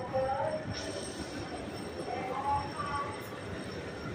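Steady outdoor city background noise, with faint, brief high tones that come and go.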